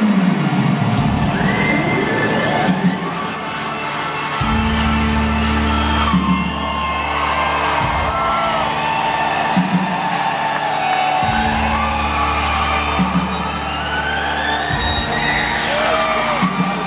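Live rock band playing a slow instrumental passage in an arena: held bass notes changing about every three and a half seconds under sustained chords, with gliding high tones arching over them. An arena crowd whoops and cheers beneath the music.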